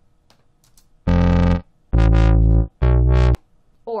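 Soundation's Wub Machine software synthesizer playing a short MIDI clip of three separate notes one at a time, the second the longest, each starting and stopping abruptly.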